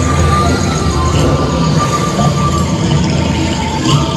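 Ride soundtrack music playing over the steady low rumble of a dark-ride car moving along its track, with a few long held tones.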